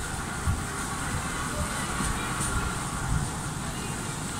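Steady mechanical hum and rumble of an airport terminal walkway with moving walkways running, with soft low thumps of footsteps as someone walks towards them.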